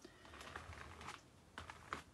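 Faint scraping strokes of a spreader pushing thick acrylic gel medium across paper, a few short swishes about half a second in and again near the end.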